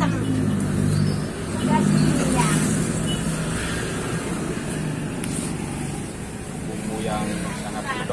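A motor vehicle's engine running close by, a steady low hum that is loudest in the first few seconds and then fades as it passes, with faint voices in the background.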